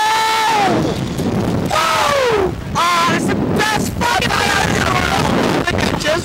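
Riders on a Slingshot reverse-bungee ride screaming: a long held scream that breaks off about a second in, then a falling cry and shorter yells. Wind rushes over the on-board microphone as the capsule swings.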